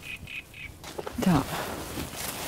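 A bird gives three short, quick calls in the first second, followed by a brief falling vocal sound.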